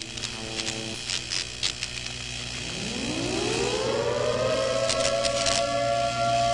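Synthesized logo sound design: glitchy static crackles, then a low droning tone that slides up in pitch from about halfway through and settles into a steady, swelling drone.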